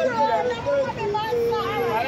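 High-pitched voices talking continuously, with the pitch bending up and down; no clear words come through.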